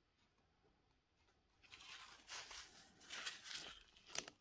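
Near silence at first, then from about halfway soft rustling and crinkling with small ticks, the sound of hands and tools being handled close to the microphone.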